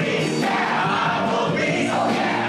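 A stage-musical cast singing together in chorus, a full group of voices carried live through the theatre.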